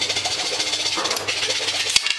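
Hand saw cutting across a thin strip of sagwan (teak) wood: a fast, loud, continuous rasp of strokes.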